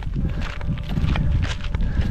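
Footsteps on a dirt and gravel path, irregular steps a fraction of a second apart, with wind rumbling on the microphone.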